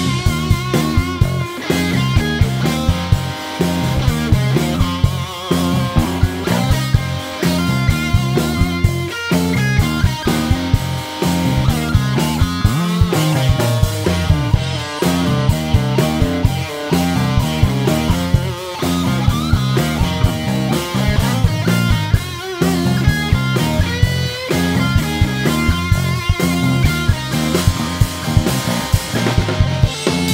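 A live blues-rock trio playing an instrumental passage: electric guitar lines with bending notes over a repeating bass guitar figure and a steady drum kit beat.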